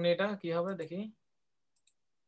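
A voice speaking for about a second, then cut off abruptly into silence, with a faint click near the end.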